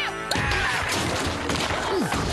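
Cartoon crash and smashing sound effects, a sudden dense clatter that starts about a third of a second in, over background music.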